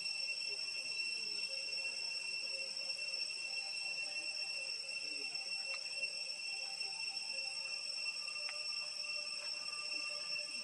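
Insects droning steadily in a single high-pitched note, with a couple of faint clicks about six and eight and a half seconds in.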